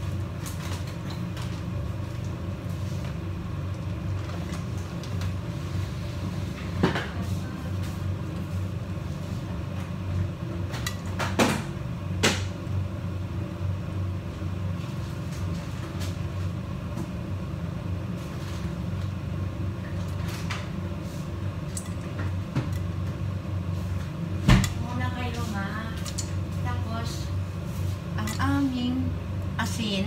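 Steady low kitchen hum while popcorn kernels heat in oil and butter in a covered saucepan on a gas hob, with a few scattered sharp clicks, the loudest about three-quarters of the way through. Faint voices come in near the end.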